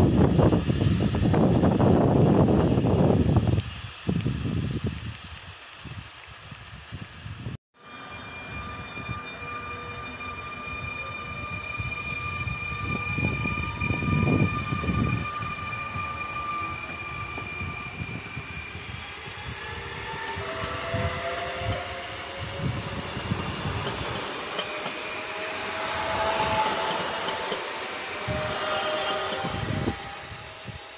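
A freight train of hopper wagons rumbling loudly as it passes, dying away after about four seconds. After a sudden cut, electric double-deck passenger trains run through with a steady high whine, then a whine that rises and falls in steps in the last ten seconds.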